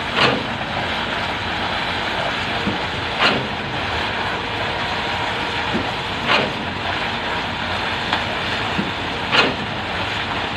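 Machinery engine running steadily, with a short whooshing surge about every three seconds.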